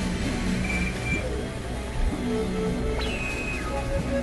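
Dense, layered experimental electronic music: held tones over a steady low bass, with a high tone that drops in pitch about three seconds in.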